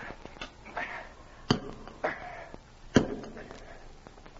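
Radio-drama sound effect of a pick striking rock: two sharp strikes about a second and a half apart, with fainter knocks between.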